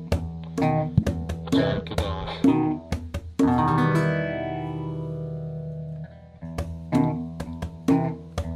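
Instrumental passage of a band's song: electric guitar, bass guitar and percussion playing together in rhythm. About three and a half seconds in a chord rings out and fades for a few seconds, then the band comes back in just after six seconds.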